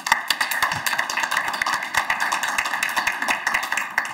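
Audience applauding: many hands clapping, starting suddenly and dying away near the end.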